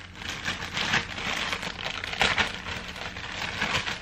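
Crinkly packaging rustling and crackling as it is handled, with louder crackles about one second and a little over two seconds in.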